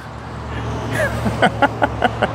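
Steady low rumble of road traffic. About halfway through, a person starts laughing quietly in short quick breaths.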